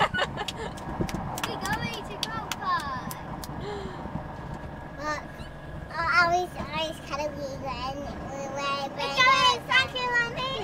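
A child's high voice talking and singing in several bursts, over steady engine and road noise inside the cab of a moving lorry.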